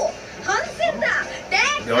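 Only speech: high-pitched, excited dialogue from an anime episode.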